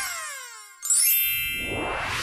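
Sound-effect sting: a falling pitch glide that fades away, then, a little under a second in, a sudden bright ringing ding with a rising whoosh that slowly dies down.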